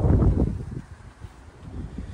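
Wind buffeting the phone's microphone: a strong low rumbling gust in the first half-second, then weaker irregular rumbling.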